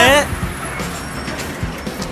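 Steady street traffic noise from passing and idling vehicles, just after a man's shouted phrase breaks off at the start.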